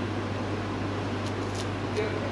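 Steady hum of room air conditioning, with two faint ticks about a second and a half in.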